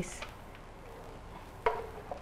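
Quiet room tone, broken near the end by a single short knock with a brief ringing tail.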